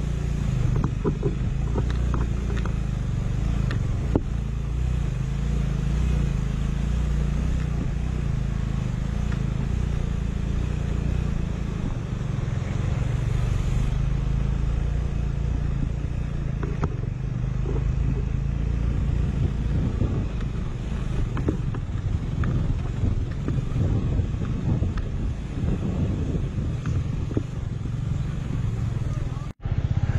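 Small motorcycle engine running steadily under load while climbing a steep, rough mountain track, with road noise over it. The sound drops out briefly near the end.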